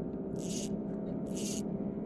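A boat's motor humming steadily, with soft swishes recurring about once a second.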